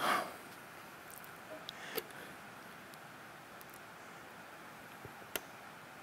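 Faint handling sounds of rubber-gloved hands working a stubborn plastic electrical connector on an EV battery junction box: a brief rustle at the start, then scattered small clicks.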